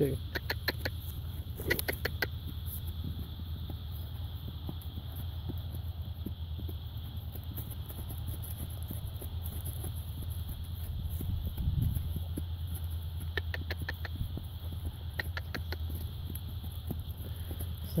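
Outdoor field ambience: a steady high insect drone over a low rumble, broken by short trills of rapid clicks at the start, about two seconds in, and twice more about three-quarters of the way through.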